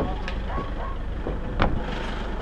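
Truck engine idling with a steady low rumble, with a single short knock about one and a half seconds in.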